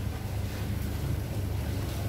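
Room air conditioning running: a steady low hum with a faint even hiss over it.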